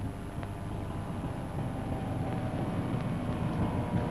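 Volkswagen Type 2 minibus engine running as the van drives along the road, getting gradually louder.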